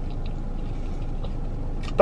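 A person chewing a mouthful of food with her mouth closed, with faint soft mouth clicks, over a steady low hum in the car's cabin.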